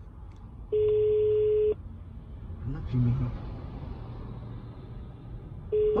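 Phone ringback tone playing through a smartphone's speaker while the call goes unanswered. A steady single tone about a second long begins just under a second in, followed by a pause of several seconds, and the next ring starts near the end.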